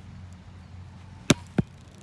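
Two sharp slaps of a thrown football arriving, about a third of a second apart, the first louder.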